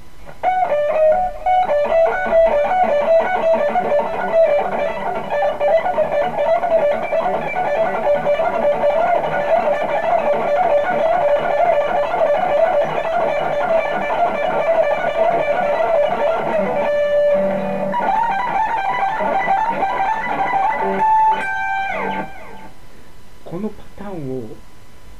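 Electric guitar, a Stratocaster-style solid-body, playing a fast, repeating neoclassical shred lick for about twenty seconds, with a short break partway through. It ends on a held note and then a note bent down and back up. The player calls the pattern quite hard and tiring to play.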